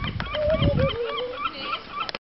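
Birds calling: a busy run of short, high calls, with a longer wavering lower call for about a second early on. A low rumble under it drops away about halfway through.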